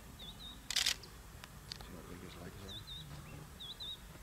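Outdoor bush ambience: a small bird gives a short high chirp call three times over a low steady rumble, with one brief sharp noise burst a little under a second in.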